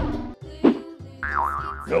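Cartoon sound effects over children's background music: a short swooping effect about half a second in, then a wavering, warbling tone from about a second in that ends in a rising glide.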